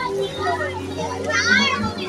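Young children's voices while they play, with one loud high-pitched child's shout or squeal about a second and a half in.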